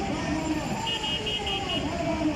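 Voices of people in a street procession, with a run of five quick, high-pitched beeps in a row about a second in.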